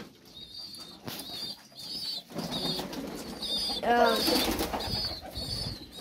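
Domestic pigeons in a wooden loft, with wing flapping in the middle of the stretch. Throughout, a short high chirp repeats about twice a second.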